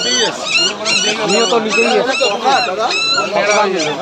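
A German Shepherd puppy whimpering and yelping in a rapid run of short, high-pitched cries, about three a second, with people talking.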